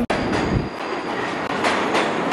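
Subway train moving along the platform: a steady rush of wheel-on-rail noise with a faint high whine, and a sharp clack about three-quarters of the way through.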